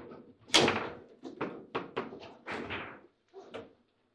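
A table football table in play. There is a loud bang about half a second in, then a quick, uneven run of sharp knocks and clacks from the ball and the rods.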